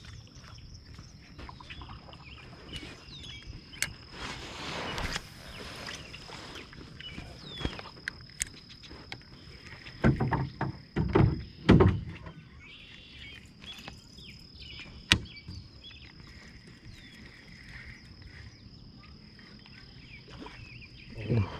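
A steady high insect trill over calm evening stillness, broken by a few sharp clicks, a short burst of hiss about four seconds in, and a cluster of low knocks and bumps of gear being handled in the canoe around ten to twelve seconds in.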